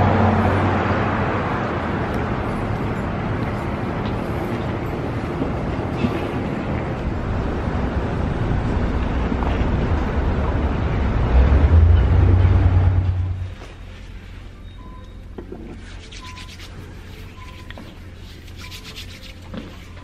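Loud, steady rumble and hiss of a subway stairwell, swelling shortly before it cuts off abruptly about two-thirds of the way through. After the cut, quiet indoor room tone with faint short beeps repeating every second or so.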